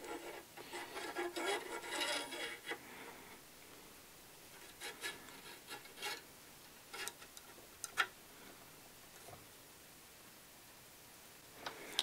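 An oiled Midwest Industries gas block being slid and worked along a Lilja rifle barrel: a faint scraping rub of metal on metal for the first few seconds, then a few light clicks and taps.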